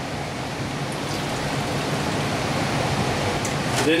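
Vinegar being poured from a cup through a plastic funnel into a condensate pump's reservoir tank: a steady trickling, splashing hiss.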